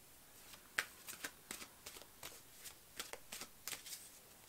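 Tarot cards being handled: a faint string of short, irregular card clicks and flicks.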